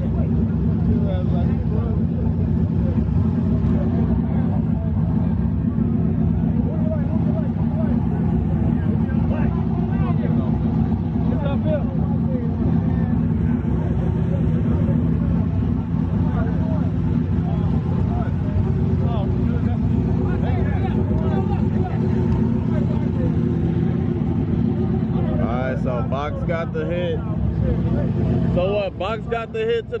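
A box Chevy's engine idling steadily and loudly close by, with people talking around it.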